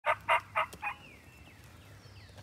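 Wild turkey calling: four quick, loud yelps about a quarter second apart, followed by faint, high, falling whistles of small birds.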